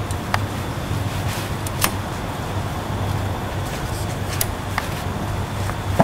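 Metal bimini-top bow tubes being slid together into place, with a few short sharp clicks as the spring snap buttons catch, over a steady low hum.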